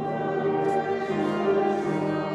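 Violin playing a slow classical melody of long bowed notes, with a lower instrument sustaining an accompaniment underneath.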